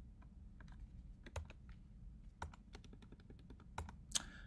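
Faint, scattered keystrokes on a computer keyboard, a few louder taps among them.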